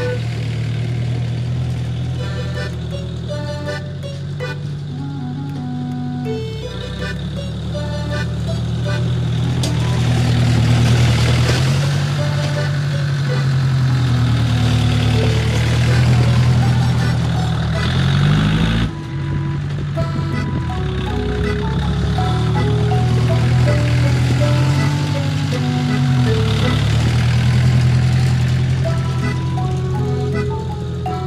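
A tractor's engine running under load, its speed rising and falling several times as it pushes snow with a rear leveling blade, with a brief drop and rise in revs a little past the middle. Background music with a light melody plays over it throughout.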